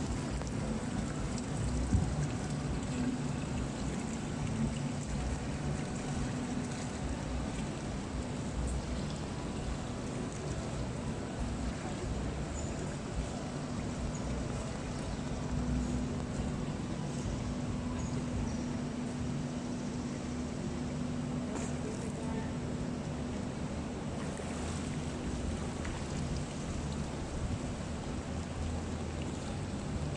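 Indoor swimming-pool ambience: a steady wash of water lapping and sloshing at the pool edge, with a low steady hum and faint distant voices. One sharp knock about two seconds in.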